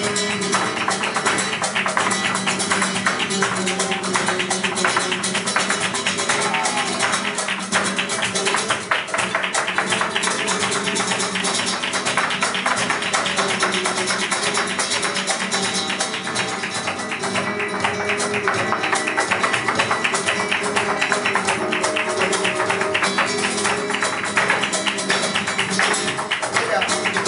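Live flamenco: a Spanish guitar playing with hand clapping (palmas) and the dancer's heeled footwork, a dense, fast rhythm of sharp strikes over the guitar.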